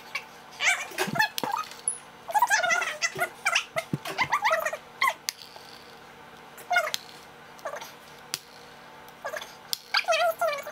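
Wordless, high-pitched vocal sounds from young boys, squeals and whines that waver up and down in pitch, in several short runs with pauses between, and a few light clicks or taps.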